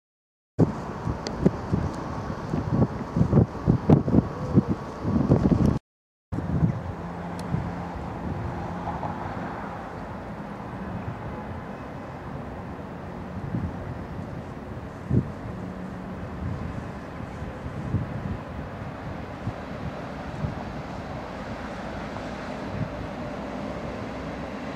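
Wind buffeting the microphone for the first few seconds, then, after a brief break, a Belgian push-pull train of M4 coaches pushed by a class 21 electric locomotive running slowly into the station. It makes a steady rumble with a faint hum and a few single clicks of wheels over rail joints.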